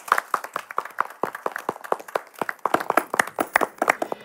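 A small audience clapping, the individual hand claps heard separately and irregularly rather than as a dense wash of applause.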